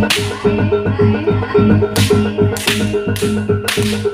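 Javanese jaranan gamelan music: tuned metal percussion plays a fast repeating pattern over drums. Four loud, sharp crashes cut through it, one at the start and three in the second half.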